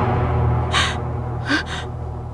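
A woman crying, with sobbing gasps for breath: one a little under a second in and a broken double one about a second later. Under them runs low sustained background music that fades away.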